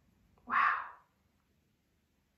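A woman says a single breathy "wow" about half a second in, then near silence.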